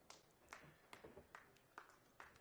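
Faint, sparse clapping from a few spectators, about five claps spaced evenly at roughly two and a half a second. The applause is hesitant because the crowd is unsure whether the shot was a good one.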